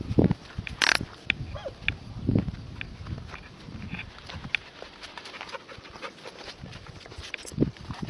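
A walking dog's breathing sounds in uneven low bursts, with a sharp breathy burst about a second in, over scattered small clicks of footsteps on a dirt road.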